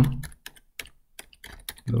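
Computer keyboard being typed on: a quick run of about ten keystrokes as a line of code is entered.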